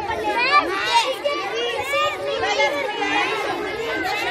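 A crowd of children chattering, many voices overlapping.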